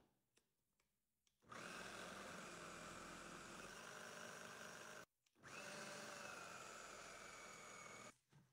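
Braun food processor motor running with a steady high whine as it shreds potato, in two runs of about three and a half and two and a half seconds with a brief stop between them.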